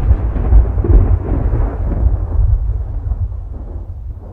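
Deep rolling thunder rumble, loud at first and gradually dying away.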